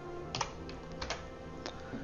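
A few isolated computer keyboard keystrokes, short clicks about half a second apart, over faint steady background music.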